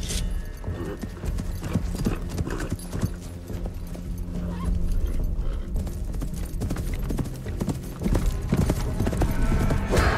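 Hoofbeats of several ridden horses, a dense, irregular run of clops, over a low, sustained film-score drone.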